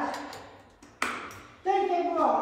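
Metal elbow crutches knocking on stair treads during a slow climb: a few sharp clacks, each with a short metallic ring. A voice sounds near the end.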